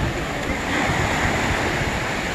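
Ocean surf breaking and washing up the beach in a steady rush, with wind buffeting the microphone.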